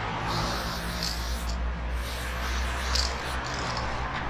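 Aerosol spray paint can hissing as paint is sprayed onto a wall, in spurts with short breaks, over a low steady hum.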